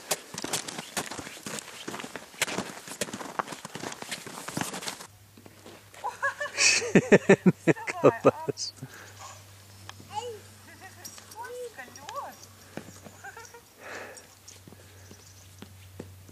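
Footsteps crunching on crusty snow and ice for about the first five seconds. After that, the loudest sound is a small child's voice in a quick run of repeated vocal bursts, about seven seconds in, followed by a few short vocal sounds.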